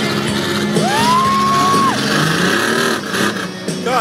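Racing pickup truck's engine revving up, holding high for about a second and dropping back, on a packed-snow track.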